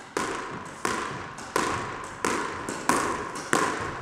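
Squash ball, fully warmed up, volleyed repeatedly against the front wall in a side-to-side volley drill: six sharp racket-and-wall hits about two-thirds of a second apart, each echoing briefly around the court.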